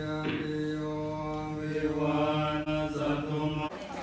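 Thai Buddhist monks chanting together in a steady, near-monotone drone of held notes. The chant cuts off abruptly shortly before the end.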